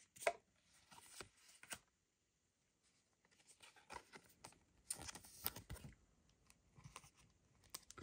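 Faint crinkling and small clicks of a thin plastic card sleeve being handled as a trading card is slid into it, in short scattered bursts with a brief silent gap.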